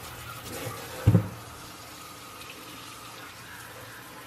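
Kitchen tap running in a steady stream onto apples in a stainless steel sink, with a single dull thump about a second in.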